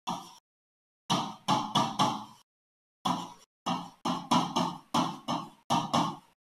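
Stylus knocking on a touchscreen board while handwriting: a dozen or so short, sharp knocks at an irregular pace, each dying away quickly, coming thicker in the second half.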